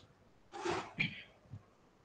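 A person's sudden, breathy vocal burst about half a second in, followed at once by a shorter second burst and a faint low blip.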